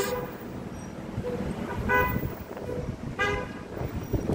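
Street traffic running by, with two short vehicle-horn toots: one about halfway through and another about a second later.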